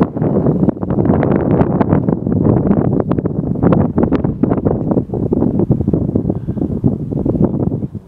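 Wind buffeting the microphone in loud, irregular gusts that drown everything else, cutting off suddenly near the end.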